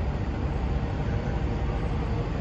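Steady low rumble of idling semi-trucks across a truck stop lot.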